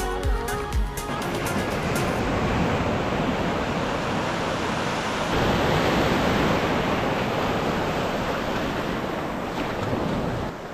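Ocean surf: small waves breaking and foaming up over the sand in a steady rush that swells about five seconds in. Background music fades out in the first second or two.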